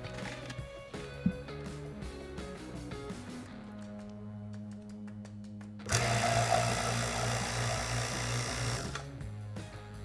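Background music, then about six seconds in an electric vacuum pump starts running loudly with a low hum, drawing air out of a glass bell jar, and stops about three seconds later.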